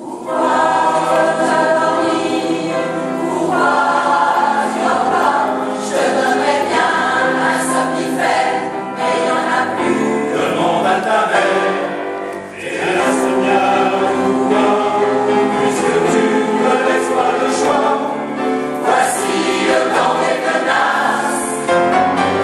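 A choir singing a lullaby, many voices together. The voices come in all at once at the start, drop away briefly about twelve seconds in, then carry on.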